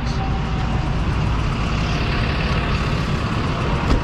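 Truck engine idling: a steady, unchanging low rumble.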